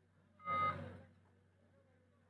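A single short beep-like tone about half a second in, lasting a fraction of a second, over a low steady electrical hum.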